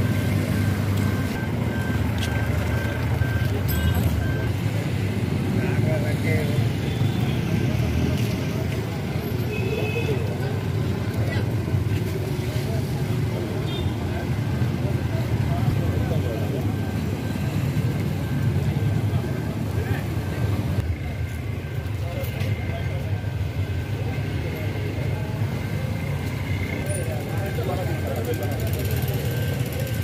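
Indistinct voices of people talking over a steady low rumble of road traffic.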